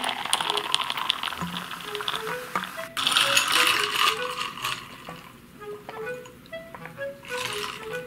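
A carbonated soft drink poured from a plastic bottle into a glass jar, fizzing and crackling as the foam rises, with a louder spell of fizz about three seconds in. Light background music with short notes plays throughout.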